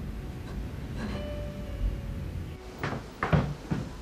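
A quick run of sharp knocks or clatters about three seconds in, like a wooden cupboard or door, over a faint low hum and a few soft held tones.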